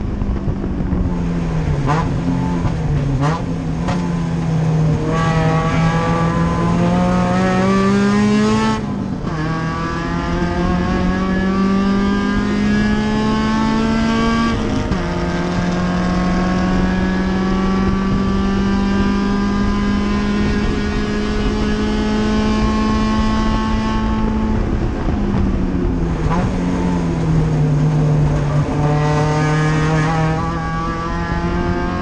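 Race car engine heard from inside the cockpit, pulling hard: the revs climb and fall off sharply twice, about a third and half of the way through, as it shifts up, then hold steady for several seconds. Near the end the revs dip and settle lower before building again.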